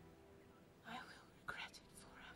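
Near silence under a faint, fading music bed, broken by two short breathy whispered sounds about a second and a second and a half in.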